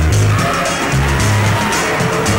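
Live calypso band playing an instrumental stretch between sung lines: a bass line of short held notes that step up and down, over regular cymbal strokes.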